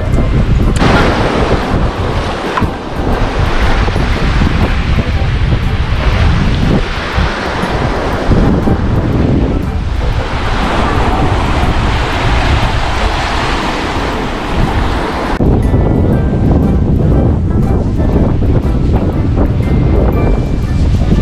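Surf washing up a sandy beach, with wind buffeting the microphone.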